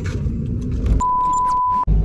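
Low rumble of a car cabin, then about a second in a single steady high beep lasting just under a second, laid over the sound in place of the background: an edited-in censor bleep. It cuts off suddenly.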